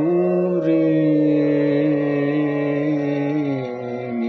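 A man singing one long, steadily held note of a devotional Sanskrit shloka over a steady drone accompaniment. The note ends shortly before the end, leaving the drone.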